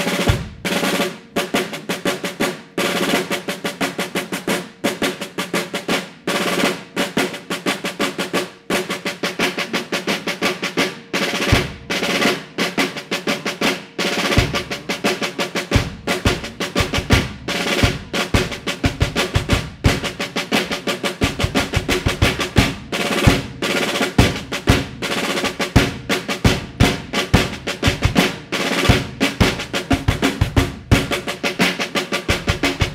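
Rudimental drum-corps snare drum solo played with sticks: fast rolls and accented strokes in a continuous, dense rhythm. Deeper low strokes join in from about a third of the way through.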